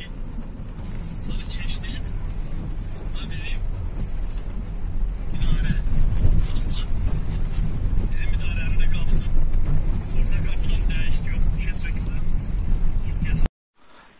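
Inside a car driving slowly over a muddy, rutted dirt road: a steady low rumble of the car in motion, with scattered short crackles and knocks from the tyres on the rough, wet surface. The sound cuts off suddenly near the end.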